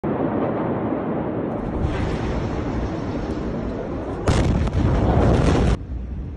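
Large port explosion and fire: a loud, continuous rumbling with crackling, then a sudden, much louder blast about four seconds in that stops abruptly near the end.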